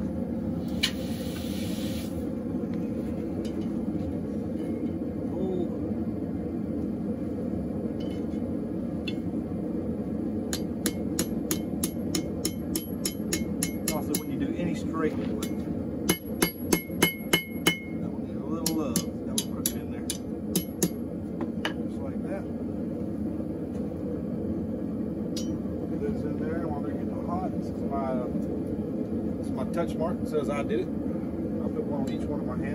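Hand hammer striking red-hot steel on an anvil, the anvil ringing with each blow. A run of lighter taps builds into a quick burst of about six heavy blows, then a few more strikes before the hammering stops.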